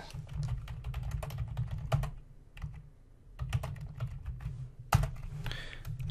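Typing on a computer keyboard: a quick run of key clicks, a pause of about a second midway, then more keystrokes with one sharper click near the end.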